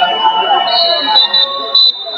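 Shrill, steady high-pitched tones over the chatter of voices in a large hall. One tone fades out about a second in. A second, higher one starts shortly before that and breaks off briefly near the end.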